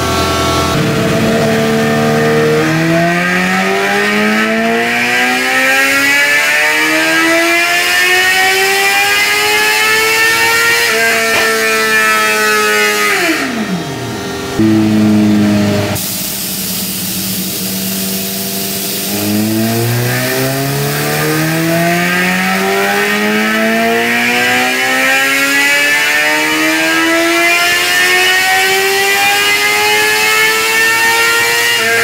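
Suzuki GSX-R750 inline-four sportbike engine making full-throttle dyno pulls on a roller dyno. It rises steadily in pitch for about ten seconds, then drops away quickly as it is backed off. After a short steady stretch it climbs again in a second long, rising pull over the last ten seconds.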